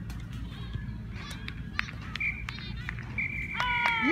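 A referee's whistle: a short blast about two seconds in, then a longer blast near the end, over faint distant shouting from the pitch and a low outdoor rumble.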